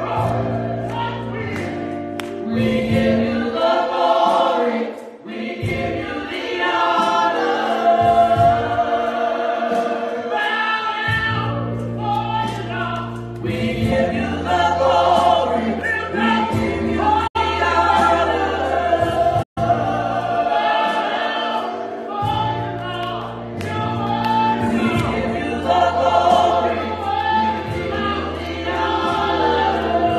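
Gospel choir singing into microphones, accompanied by a keyboard playing long held bass notes. The sound cuts out for an instant twice, about two seconds apart, a little past the middle.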